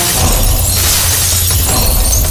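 A glass panel shattering, with a long crash of breaking and falling shards that thins out near the end. A low music bed runs underneath.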